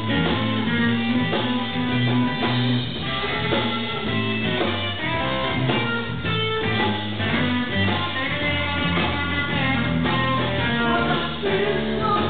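Live blues-rock trio playing: electric guitar over bass guitar and a drum kit, an instrumental passage with no words.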